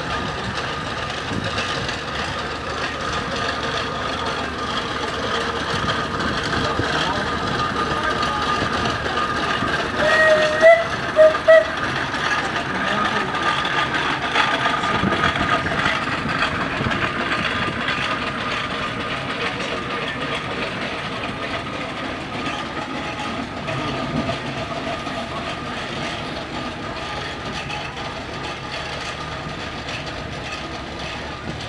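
Steam traction engine passing with its steady mechanical running, its whistle sounded in three short toots about ten seconds in, the first a little longer than the other two.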